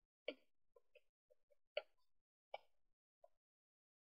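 Near silence, broken by three faint short clicks.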